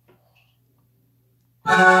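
Near silence with a faint low hum, then, near the end, a man's voice starts singing unaccompanied, holding a loud, long "oh" on one steady pitch.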